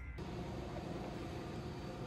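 Steady background hiss with a low hum: room tone.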